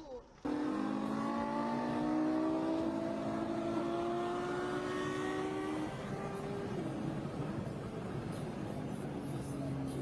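Sports car engine under hard acceleration, its pitch climbing steadily for about five seconds, then dropping at a gear change about six seconds in and pulling on at a lower pitch.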